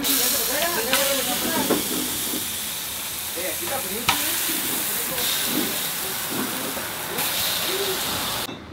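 Corn tortillas and meat sizzling steadily on a hot taco griddle, with a few light taps as the tortillas are laid down.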